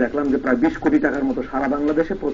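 A man's voice preaching, drawing out some vowels in long, held tones.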